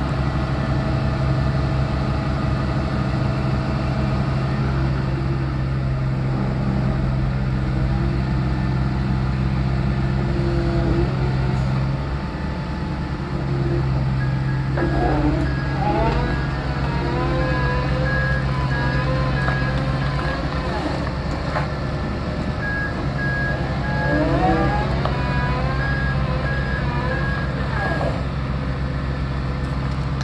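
Terex Fuchs MHL 340 material handler's diesel engine running steadily. About halfway through, the machine's warning alarm starts beeping in two spells of quick, high beeps.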